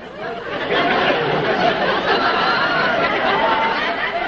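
Live studio audience laughing and chattering all at once, swelling about half a second in and then holding steady.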